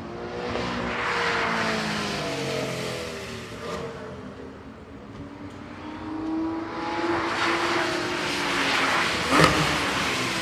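Race car engines running under power as cars pass on the track, swelling about a second in and again, louder, from about six seconds, their pitch drifting as they go. A sharp crack stands out near the end.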